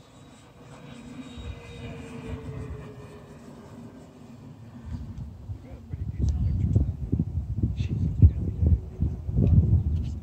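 Radio-controlled model F7F Tigercat flying past overhead, its engine note faint and falling slowly in pitch as it goes by. From about six seconds in, loud irregular low rumbling from wind on the microphone covers it.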